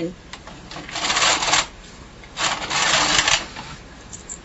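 Bond knitting machine carriage pushed across the needle bed twice, knitting a row each time, with a rattling rasp as it runs over the needles.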